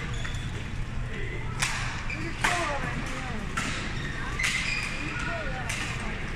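Badminton rally: five sharp smacks of racket strings on a shuttlecock, about a second apart, with short squeaks of court shoes on the floor between them. The hits ring on briefly in a large hall.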